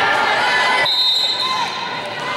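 Players and spectators calling and shouting in an echoing gym, then, about a second in, a short steady high-pitched blast of a referee's whistle, the signal for the server to serve.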